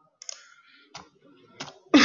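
A few sharp clicks on the presenter's computer as the presentation is advanced to the next slide, with a louder sound setting in right at the end.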